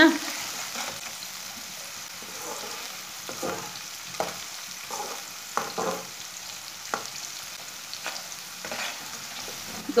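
Chopped green garlic and whole spices frying in oil in a metal wok: a steady sizzle. A metal spoon stirs through it, scraping against the pan several times at irregular moments.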